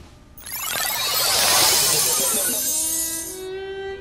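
Magic sparkle sound effect. A bright, shimmering cascade of chime-like tinkles starts about half a second in and thins near the end to a few held tones that step up in pitch, the kind of sound that marks a fairy vanishing by magic.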